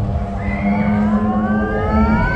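A siren-like whine rising steadily in pitch from about half a second in, over a steady low hum.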